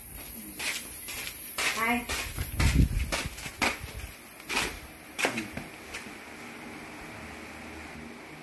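Footsteps walking across a concrete and tiled floor: a run of short, sharp steps at about two a second. There is a heavier low thud about three seconds in, and a few brief murmured vocal sounds.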